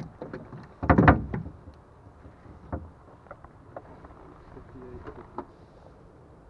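Knocks and thumps from a musky being handled on a wooden measuring board over a boat's livewell: a loud cluster about a second in, then scattered lighter single knocks.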